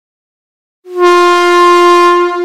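Locomotive air horn sounding one long, steady, loud blast on a single pitch, starting just under a second in.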